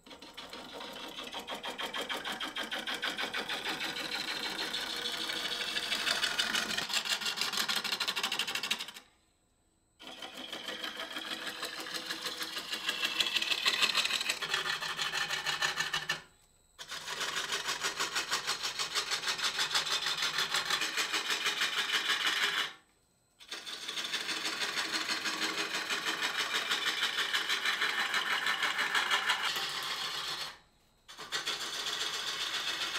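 Wood lathe running with a tool cutting the spinning wood: a fast, even ticking chatter that builds up at the start of each pass, broken three times by short silences.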